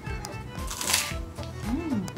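A crisp cracker crunching once as it is bitten and chewed, about a second in, over background music.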